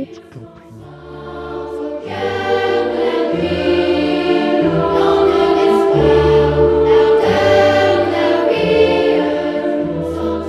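A choir of young girls singing long held chords, with low held notes beneath; it starts soft and swells to full volume about two seconds in.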